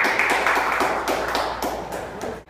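A small group of people clapping their hands in applause, many quick overlapping claps that taper off toward the end.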